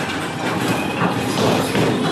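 Bowling balls rolling down the lanes, a steady rumble, as a ball is bowled on the near lane.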